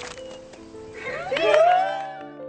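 Soft background music with long held notes. About a second in, a drawn-out vocal sound rises and bends in pitch over it, then fades by the end.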